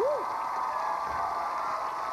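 Studio audience applauding and cheering, with a single "woo" shout right at the start.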